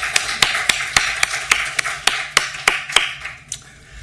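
Small audience applauding: distinct claps over a softer patter of hands, dying away about three and a half seconds in.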